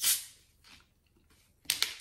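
Carbonation hissing out as the cap of a plastic bottle of Mug root beer is twisted open: a sharp hiss that fades within about half a second.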